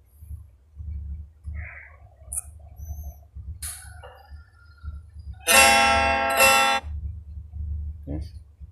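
Guitar backsound track previewed in a phone video-editing app. A few faint notes come first. About five and a half seconds in, a loud held guitar tone rings, struck twice, for about a second and a half, over a steady low hum.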